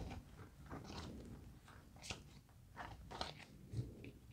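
Faint rustles, soft taps and scrapes of tarot cards being picked up off the table and gathered into a stack in the hand, coming in a few scattered short strokes.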